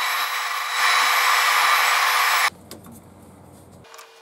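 CNC milling machine's spindle and cutter machining a slot in an MDF board, a loud, steady rushing whine that grows louder about a second in and cuts off suddenly after about two and a half seconds. Quieter workshop sounds follow, with a steady hum starting near the end.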